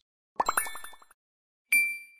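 Cartoon-style sound effects from an animated subscribe end card: a rapid run of about ten short plopping blips, each rising in pitch, then a bright bell-like ding near the end that keeps ringing.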